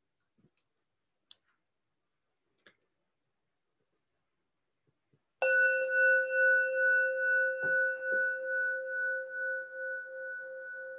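A few faint clicks, then a meditation bell struck once about five seconds in, ringing on with a wavering, slowly fading tone. It marks the close of a silent meditation.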